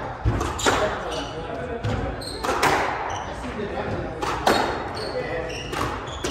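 Squash rally: the ball is struck by rackets and hits the court walls in sharp cracks roughly once a second, with short squeaks of court shoes on the wooden floor between the shots, echoing in the enclosed court.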